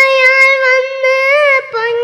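A child singing solo in a high voice, holding long drawn-out notes with small turns of pitch, with a brief break and a slightly lower note near the end.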